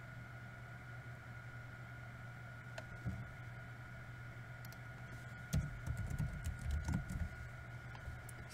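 Computer keyboard being typed on: a few isolated key clicks around the middle, then a quick run of keystrokes near the end. A steady electrical hum sits underneath.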